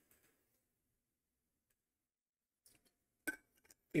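Handling of an orange plastic water bottle after a drink: near silence, then a few faint clicks and one sharp click about three seconds in as the bottle is put away.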